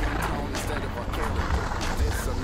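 Wind buffeting the microphone of a moving body-worn camera: a steady rumbling hiss, with a few soft crunches of footsteps on packed snow.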